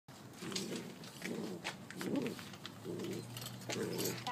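Two golden retriever puppies play-fighting, giving short low growls about once a second, with a few light clicks and scuffles from their wrestling.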